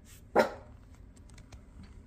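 A small dog gives a single short, sharp bark about a third of a second in.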